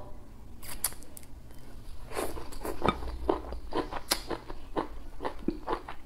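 A person chewing a mouthful of spicy hot pot close to the microphone: irregular wet mouth clicks, several a second.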